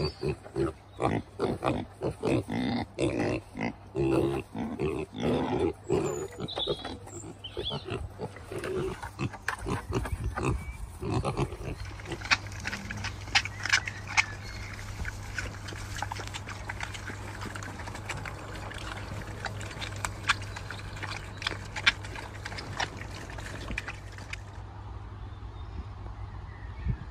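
Kunekune piglets feeding, grunting and squealing busily for the first half. Then fainter scattered crunching clicks as they chew fruit and vegetables, over a steady low rumble.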